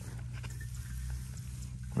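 A steel shovel blade working into a clay bank, heard as a few faint scrapes and ticks, over a low steady hum.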